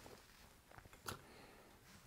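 Near silence: faint room tone, with one short faint click about a second in.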